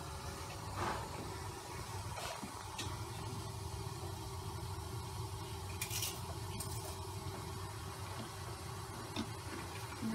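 A steady low mechanical hum with a faint steady tone, broken by a few faint clicks and a brief hiss about six seconds in.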